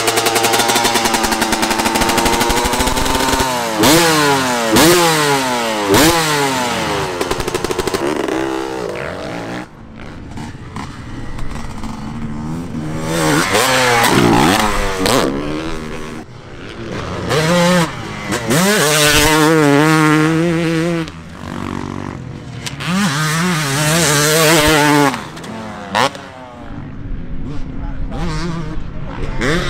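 Dirt bike engine revving hard and running through the gears, its pitch repeatedly climbing and dropping with each shift. The engine fades out about ten seconds in and swells back up twice as the bike rides around the track.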